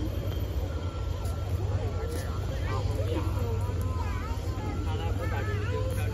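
Indistinct voices talking over a steady low rumble; the voices become more frequent from about two seconds in.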